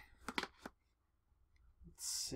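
A few faint clicks from the cardboard router box being handled, then near silence.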